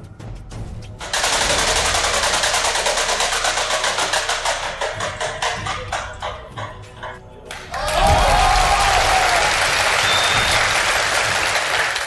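Game-show prize wheel spinning, its pointer ticking rapidly against the pegs over studio applause for about six seconds until the wheel stops. Then the audience breaks into louder applause and cheering as the category comes up.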